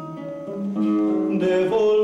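Classical nylon-string acoustic guitar playing chords, soft at first, then strummed louder from just under a second in.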